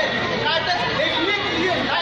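Several voices talking at once in overlapping chatter, with no other clear sound standing out.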